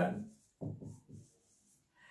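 Chalk writing on a chalkboard: a few short strokes about half a second in as a word is written.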